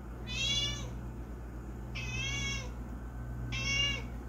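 Tabby cat meowing three times in short, high-pitched calls, begging for food.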